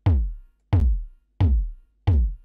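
Soloed electronic kick drum from a mix playing steadily, three hits about 0.7 s apart, each a short attack that drops quickly in pitch into a deep low tail.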